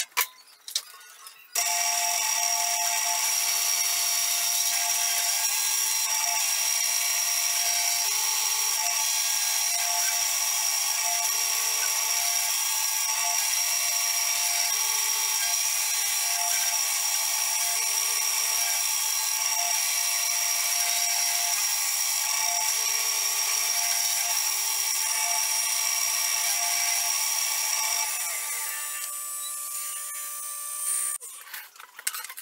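Vertical milling machine running an end mill through a brass bar held in a vise: a few handling clicks, then the spindle starts about a second and a half in and cuts steadily with a constant high whine, winding down near the end.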